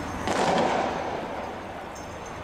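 A single sudden bang a quarter second in, fading out over about a second.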